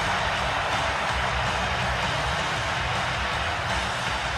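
Music playing over an ice hockey arena's sound system, with a steady crowd din underneath and a pulsing low beat.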